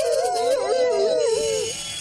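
A cartoon dog's wavering, sobbing howl, held for about a second and a half, crying over being dirty and unloved.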